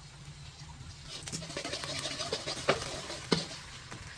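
Metal spatula scraping and stirring sliced lemongrass and garlic in a hot wok, with sizzling that picks up about a second in and two sharp knocks of the spatula on the pan near the end. A steady low hum runs underneath.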